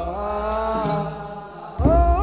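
Ethiopian Orthodox aqwaqwam chant: voices in unison hold long notes that glide slowly in pitch, with a burst of sistrum jingling about half a second in. The singing thins out a little past halfway and swells back in just before the end.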